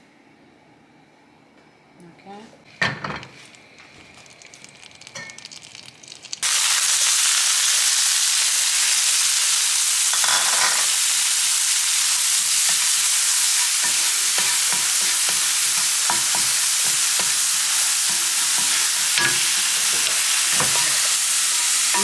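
Dried barberries (zereshk) sizzling in butter in a nonstick frying pan, stirred with a wooden spatula. After a few faint knocks the sizzle starts abruptly about six seconds in and runs on steadily, with the spatula scraping and tapping against the pan.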